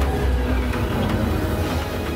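Deep, loud rumble of a huge spaceship hovering overhead, a film sound effect, with trailer music underneath.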